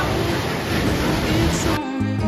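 Sea waves breaking on rocks: a steady rushing of surf and spray, with music faintly underneath. Near the end the surf cuts off suddenly and the music carries on alone.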